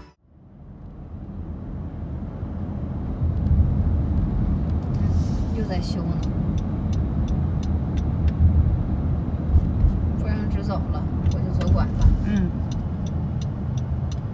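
Road and engine noise inside a moving car's cabin: a steady low rumble that fades in over the first two seconds. Faint voices come in briefly a few times, and a light regular ticking, about two a second, runs through the second half.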